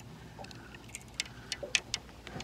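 Handling noise from gear being moved close to the microphone: a few light, sharp clicks and taps in the second half, over a quiet background.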